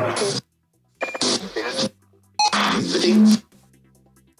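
A ghost box app on a phone sweeping through snatches of voices and music. Three short bursts cut in and out abruptly, with dead gaps and a low steady hum between them.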